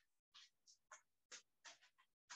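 Very faint, short scratchy sounds, two or three a second, from a dog moving about on a hardwood floor.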